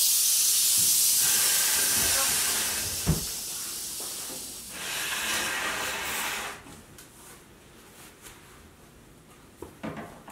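A rattlesnake rattling: a steady, high buzz that fades after about four seconds, comes back briefly and stops about six and a half seconds in. There is a thump about three seconds in, and a few light knocks near the end.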